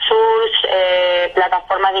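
A voice drawing out a long, steady hesitation sound ('eeeh') while searching for the next word, then carrying on speaking near the end.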